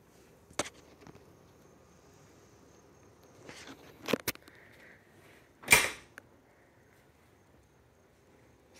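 Faint clicks and knocks from handling an RV refrigerator's door: a light click early, a quick double click about four seconds in, and one louder short knock with a brief rustle nearly six seconds in.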